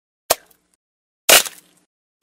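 Cartoon sound effects: a short click, then about a second later a louder pop as an animated egg cracks open.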